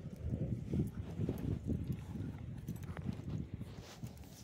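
Walking footsteps with muffled low thuds and rustling from a hand-held phone microphone being jostled, several knocks a second.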